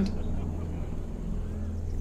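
A low, steady rumbling drone with a soft haze of noise over it, the background ambience of the anime's soundtrack under a landscape scene.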